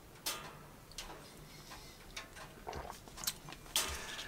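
Faint, irregular clicks and crackles from a burning wood stove. A louder clink of a china cup being set down comes near the end.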